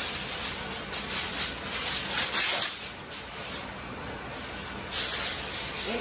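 Aluminium foil crinkling and rustling as a sheet is pulled from the roll and handled, in irregular crackly bursts. There is a lull about three seconds in, and a loud burst again near the end.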